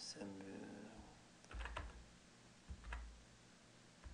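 A few keystrokes on a computer keyboard: a quick cluster of clicks about a second and a half in and one more near three seconds, each with a dull low thud.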